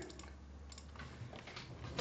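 A computer mouse click right at the start, then a few faint scattered clicks like light typing, over a low steady hum.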